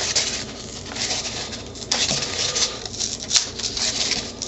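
Corrugated cardboard scraping and rustling as a strip of it is scored down the middle with a knife and handled, with irregular small crackles and taps.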